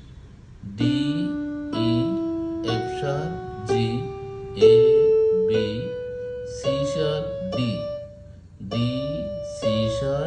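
Yamaha portable keyboard on a piano voice playing a C major scale one note at a time, about one note a second, rising step by step and turning back down near the end.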